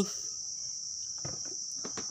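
Lid latch of a National rice cooker clicking as the lid is released and swings open, a couple of faint clicks over a steady high-pitched whine.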